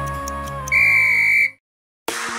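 A single long electronic timer beep, one steady high tone lasting under a second, marking the end of the countdown and the start of the exercise interval. Background music fades just before it, and the beep cuts off sharply into silence.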